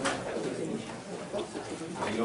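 Indistinct chatter of several voices in a classroom, too low and overlapping to make out words.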